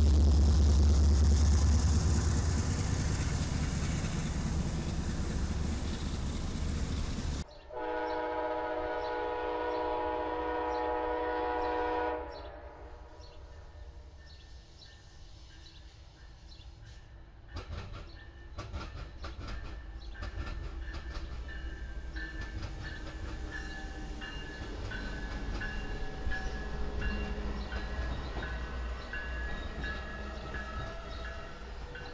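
A diesel locomotive passes close with a loud, deep engine rumble. About seven seconds in, after a cut, an Amtrak passenger locomotive's air horn sounds one chord for about five seconds. The train then rolls by with wheels clicking over rail joints, and a bell rings steadily near the end.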